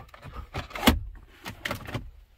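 The wood-trimmed sliding cover of a Cadillac Escalade's console cup holders being slid shut, giving a few plastic clicks and knocks, the sharpest about a second in, with a microfiber towel rubbing over the trim.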